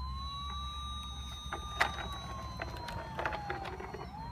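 Toy fire truck's electronic siren wailing: one slow sweep that rises, holds, then falls gradually, starting to rise again at the very end. A single knock sounds about halfway through.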